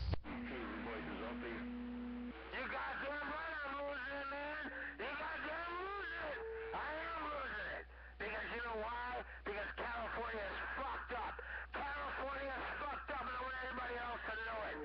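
CB radio receiver playing garbled, distorted voice transmissions over a steady low hum, with steady tones under the voices for the first two seconds and again around six seconds in.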